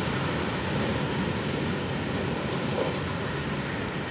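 Loaded open hopper cars of a Florida East Coast Railway freight train rolling past, a steady rumble of wheels on rail that eases off slightly toward the end as the last car clears.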